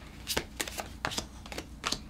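A tarot deck being shuffled by hand: a quick, irregular run of short card snaps and clicks.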